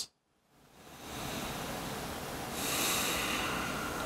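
Slow breathing close to the microphone after a brief dropout to silence at the start. The breath grows louder and airier about two and a half seconds in.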